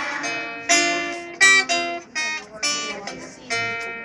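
Acoustic guitar playing a run of strummed chords, each struck sharply and left to ring, a new chord roughly every half second.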